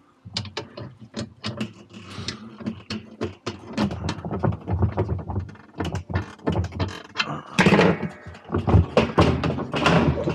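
An old jack being cranked against a board laid across a Whirlpool Cabrio washer's inner tub, jacking the stuck tub up off its drive shaft. A steady run of metallic clicks and knocks, about three a second, growing louder over the last couple of seconds.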